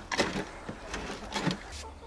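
Spade blade scraping soil and compost across a wire mesh sifting screen in a few rough back-and-forth strokes, breaking up clumps so the fine compost falls through.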